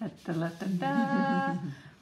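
A person's wordless, drawn-out "ooh"-like hum that holds one pitch for just under a second before fading: an admiring reaction.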